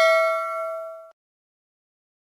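Bell-like 'ding' sound effect of a subscribe-button animation's notification bell, ringing with several steady tones and fading, then cut off suddenly about a second in.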